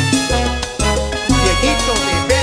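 Live salsa band playing an instrumental passage without vocals: upright bass, timbales and congas driving a steady rhythm.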